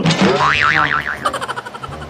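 Cartoon 'boing' sound effect: a sharp twang whose pitch wobbles quickly up and down, fading out over about a second and a half.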